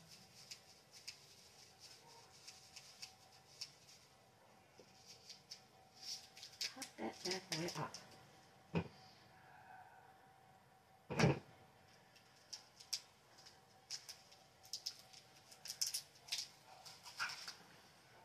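Small clicks and rustles of a plastic bag being handled as tiny diamond-painting drills are poured into a small bottle. There is a louder single knock about eleven seconds in.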